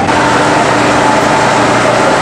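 35mm film projector and its platter system running, a steady mechanical whir and clatter as the film is fed through.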